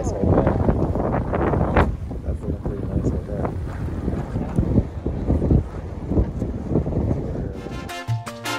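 Wind buffeting the camera microphone in a low, uneven rumble, with a voice heard in the first half-second.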